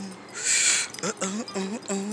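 A person's voice chanting a sing-song, hooting "uh oh" over and over, broken about half a second in by a short, loud hiss.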